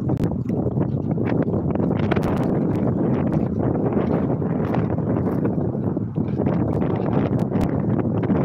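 Wind buffeting a phone's microphone in a steady, loud rumble, with scattered light clicks throughout.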